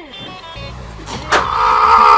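A rubber sandal slaps once against a man's back, a sharp smack a little over a second in. A loud, rough, sustained noise follows straight after, over background music.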